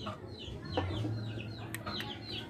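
Chickens calling: a run of short, high, falling chirps, several a second, over a low steady hum, with one sharp click near the end.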